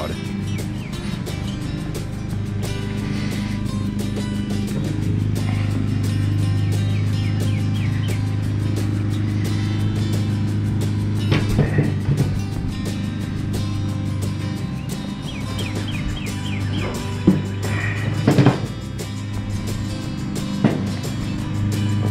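Background music with steady sustained low notes. A few short clunks of the metal grill lid being handled come near the end.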